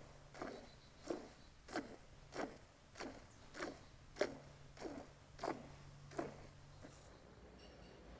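Jersey cow being hand-milked: faint, regular squirts of milk hitting the foam in a stainless steel bowl, about one every 0.6 s, each dropping in pitch. The squirts stop about seven seconds in.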